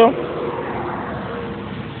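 A vehicle passing on the road: a steady rushing noise that slowly fades.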